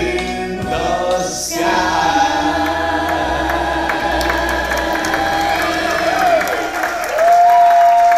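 A man, a woman and a boy singing together into microphones in harmony, on long sustained notes. Near the end the group holds one long steady final note.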